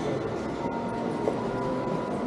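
Steady background din of a busy covered shopping arcade, with crowds of pedestrians passing.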